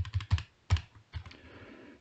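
A quick run of short, sharp clicks and taps on computer controls, most of them in the first second, then only faint background hiss.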